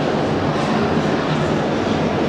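Steady din of a large indoor hall: the murmur of many people and room noise, with no single sound standing out.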